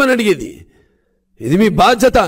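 A man speaking in Telugu into a microphone. His voice trails off about half a second in, a dead-silent gap of under a second follows, and then he resumes.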